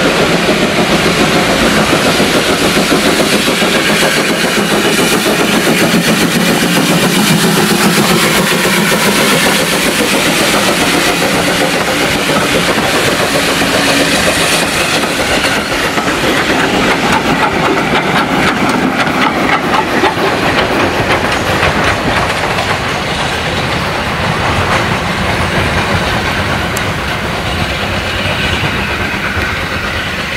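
A steam tank locomotive hauling a passenger train past at close range, followed by the coaches clattering over the rail joints, with a run of quick clicks as they pass. The sound eases a little near the end as the train draws away.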